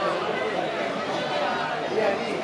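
Background chatter of several people talking at once, with no single voice clear.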